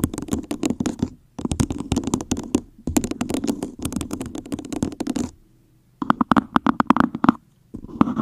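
Long fingernails rapidly tapping and scratching on an upside-down blue cup, in runs of quick clicks broken by short pauses, with a brief silence about five and a half seconds in.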